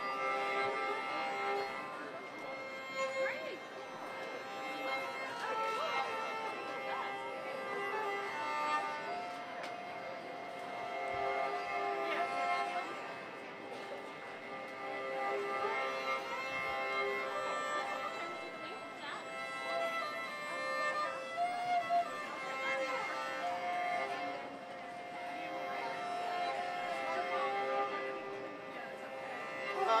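Open-back banjo played with a violin bow: a slow tune of long, held notes that sound steadily like a fiddle.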